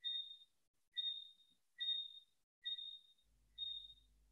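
An electronic beep sounds five times, about once a second: a short high ping that fades each time. A faint low hum comes in near the end.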